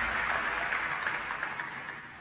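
Audience applauding, starting abruptly and fading away over about two seconds.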